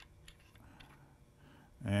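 A few faint clicks and light scraping as a small threaded lens cap is unscrewed by hand from a camera body.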